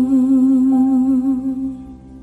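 The closing note of an Indonesian pop ballad: a long held vocal note with a wavering vibrato over soft accompaniment. It fades away near the end as the song finishes.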